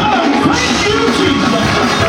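Loud live gospel praise-break music from a church band with drums, a voice rising and falling over it.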